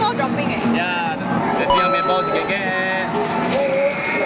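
Arcade machine electronic sounds. A bright chime of steady bell-like tones starts suddenly just under two seconds in and rings for about a second, over a constant din of other machines' jingles and music.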